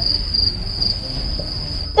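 A steady, high-pitched insect trill, typical of a cricket, over a low hum.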